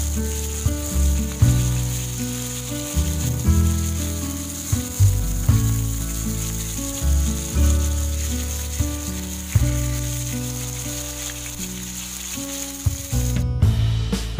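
Fritters frying in oil in a steel kadai, a steady sizzle, with background music of held bass notes changing every second or so. Shortly before the end the sizzle stops at a cut, and the music goes on with sharp plucked notes.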